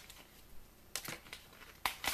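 Quiet handling noise from trading cards and pack wrappers: a few brief rustles and clicks, one about a second in and another near the end.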